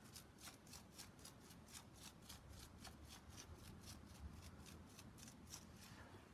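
Faint, quick, rhythmic strokes of a stiff-bristled paintbrush on a wet acrylic pour, about four a second, worked to raise tiny cells in the paint.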